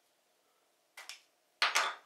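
Two short handling noises from a nylon backpack: a brief rustle about a second in, then a louder scraping rustle near the end.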